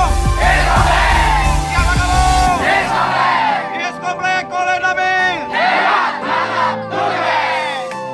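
A large group shouting its cheer (yel-yel) together in about five loud bursts, over background music. The music's heavy bass beat stops about two and a half seconds in.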